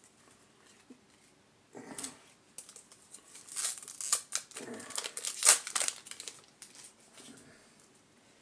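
Crinkling and tearing of a trading-card pack wrapper being ripped open: a run of irregular crackles, loudest in the middle.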